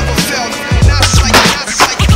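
Hip hop backing track between rapped verses: a steady beat of kick drum and bass under sampled sounds.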